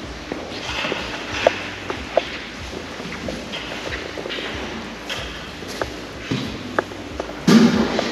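Footsteps on a hard church floor in a large echoing room, with a few sharp clicks along the way and a louder thud near the end.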